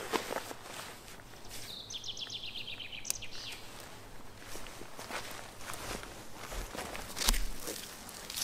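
Footsteps and rustling of clothing and gear on forest ground, with a short trill of a bird, about ten quick notes falling in pitch, about two seconds in. A louder cluster of knocks and a low thump of handling comes near the end.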